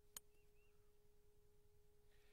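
A single sharp click of a hybrid club striking a golf ball on a short, putter-like chip, just after the start, over a faint steady hum.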